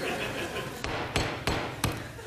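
Hammer blows: four sharp strikes in quick succession in the second half, roughly three a second.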